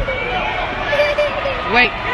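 Crowd of spectators talking and calling out all at once, with one louder shout near the end.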